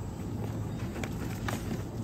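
Low steady hum of a supermarket aisle, with three light taps in the second half as small cardboard boxes are handled on a shelf.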